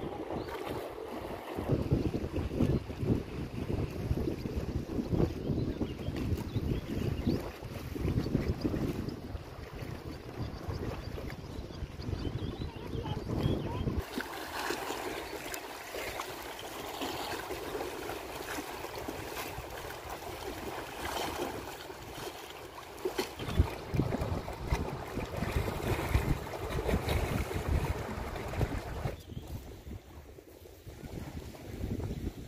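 Wind buffeting the microphone in gusts for the first half. From about halfway, small lake waves lapping and splashing against stone blocks at the water's edge.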